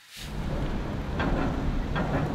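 Steady low rumble of vehicles on a ferry car deck, fading in quickly just after the start.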